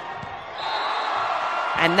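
A volleyball struck with a sharp thump as a rally ends, then the arena crowd's noise swells into cheering for the point. A short high whistle sounds about half a second in.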